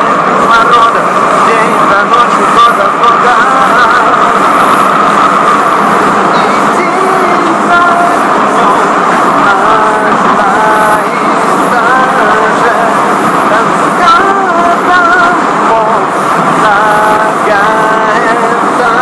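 Subway train running, a loud steady rumble inside the carriage, with a man singing over it and picking out a melody of short, stepped notes on a small toy keyboard.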